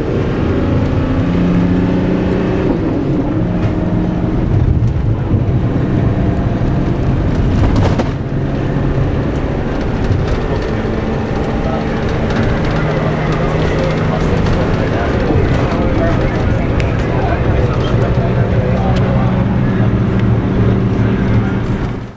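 Steady engine and road noise heard from inside a moving tour bus, with indistinct voices in the cabin.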